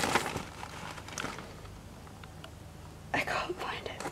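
Rustling of a plastic mailer bag and paper delivery note being handled, fading after about a second and a half, followed by a few faint ticks. A soft voice comes in about three seconds in.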